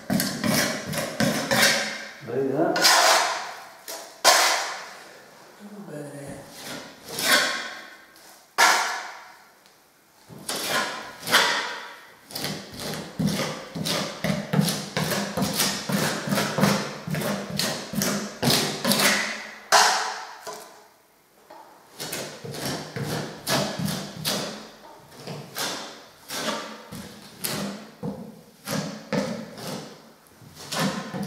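Filling knife scraping and spreading undercoat plaster over a ceiling: repeated sweeps of the blade with many short taps and knocks as it is worked into the holes.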